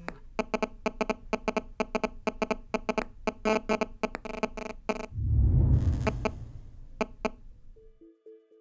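Electronic sound-design intro: a rapid, even train of short buzzing synth pulses, about five a second, then a low rumbling swell about five seconds in, and two last pulses near the end.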